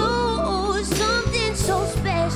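Live R&B ballad: a woman sings a line that bends and wavers in pitch over sustained bass and chord accompaniment.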